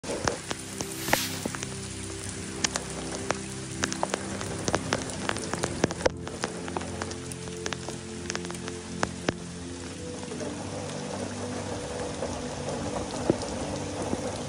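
Rain falling, with many individual drops striking close by as sharp ticks, most dense in the first ten seconds, under soft sustained piano music.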